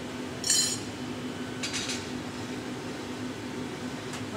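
Steady low hum of the hot-shop furnaces with two brief, high metallic sounds from glassworking tools; the first, about half a second in, is the louder.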